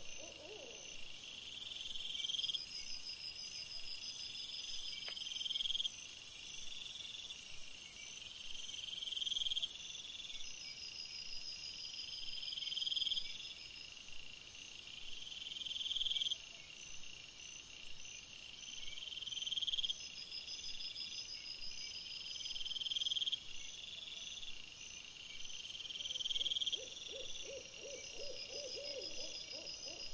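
Night insects calling: high, rising chirps about a second long repeat every three to four seconds over a high-pitched trill that is loudest in the first ten seconds. Near the end an owl gives a long, wavering hoot.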